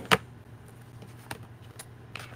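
Two sharp clicks of hard plastic right at the start, a clear stamp block and its plastic case being handled and set down on a craft mat, followed by quiet with a couple of faint taps later on.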